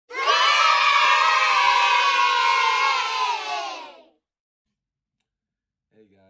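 A crowd of voices shouting and cheering together for about four seconds, the yell dropping in pitch as it fades out.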